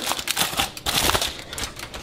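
Aluminium foil crinkling with irregular crackles as it is peeled off a bundt tin and scrunched up in the hand.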